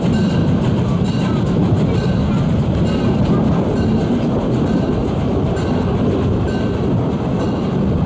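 Carriages of a narrow-gauge steam train rolling along the track: a steady, loud rumble with faint recurring clicks, mixed with wind noise on the microphone.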